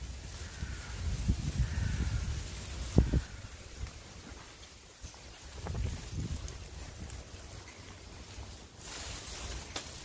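Wind buffeting the microphone, a low rumble that comes and goes in gusts. There is a single knock about three seconds in and a short hiss near the end.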